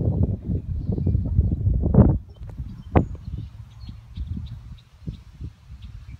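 Ragged, low rumbling and knocking on the camera's microphone, loud for the first two seconds and then fainter, with one sharp click about three seconds in.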